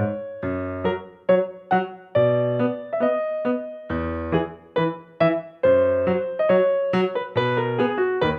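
Background music: a keyboard tune in a piano tone, notes struck in a quick, even rhythm over low bass notes.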